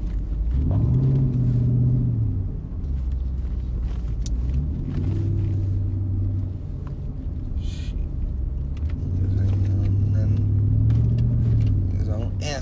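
Car engine heard from inside the cabin, a low drone that rises in pitch as the car speeds up about half a second in, drops back after two seconds, and rises again twice more, with a few short clicks over it.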